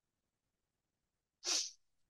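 Near silence, then about a second and a half in, a man's short in-breath through the microphone just before he speaks.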